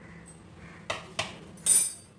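Kitchen crockery and utensils clinking: two light clicks about a second in, then a brief, sharper and brighter clink near the end.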